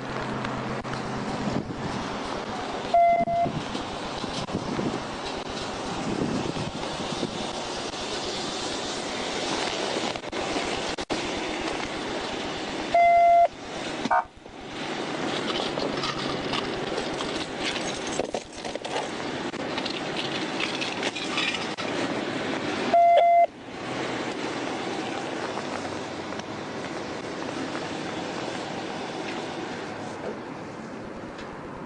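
Steady outdoor street and traffic noise, cut three times, about ten seconds apart, by a short, loud, flat electronic beep that blots out all other sound while it lasts, like an edited-in censor bleep. The middle beep is the longest.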